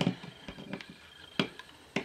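Multimeter test probe tips clicking against the metal terminal pins of a switch. A few faint ticks, then a sharp click a little under one and a half seconds in and another near the end.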